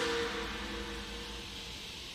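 A held music note fades out at the very start, leaving a low steady rumble and a faint hiss.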